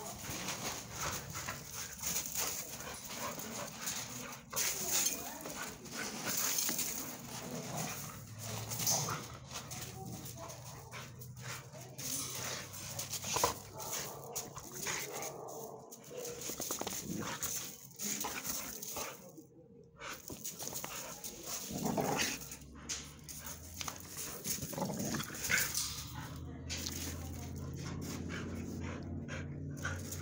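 Two dogs playing and moving about, with irregular scuffs and clicks and occasional dog whimpers.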